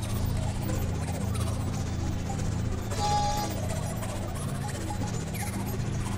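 Experimental synthesizer drone music: a steady low drone with faint gliding tones above it, and a brief high tone with a burst of hiss about halfway through.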